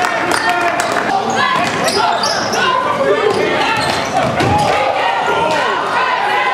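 A basketball bouncing on a hardwood gym floor during play, among the voices of players and spectators echoing in the gym.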